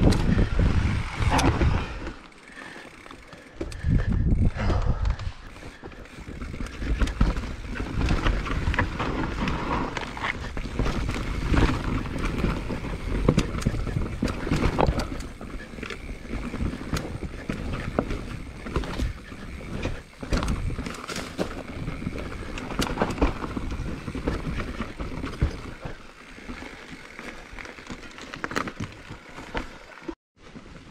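Mountain bike riding fast down a dirt trail: wind buffeting the camera microphone as a low rumble, with tyre noise and frequent sharp rattles and knocks from the bike over bumps. It eases off briefly about two seconds in and again near the end.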